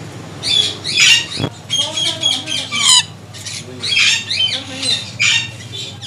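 Caged parrots calling: a run of short, shrill squawks and chirps, several each second, with one sharp knock about a second and a half in.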